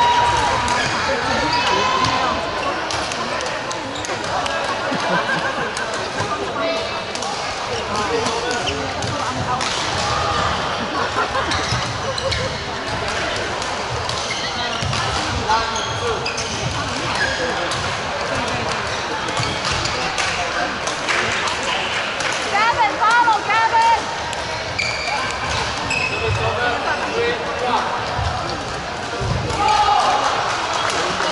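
Badminton hall during doubles play: scattered sharp racket-on-shuttlecock hits and footfalls from several courts, with players' calls and spectators' chatter, all echoing in a large indoor hall.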